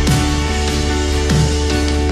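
Live worship band playing an instrumental passage: acoustic and electric guitars over a sustained low bass, with a few soft thumps.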